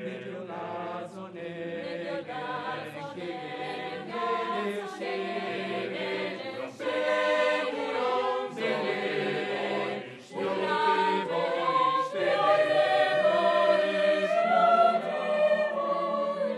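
Mixed choir of men's and women's voices singing a cappella in sustained chords. The singing swells louder in the second half, after a brief break about ten seconds in.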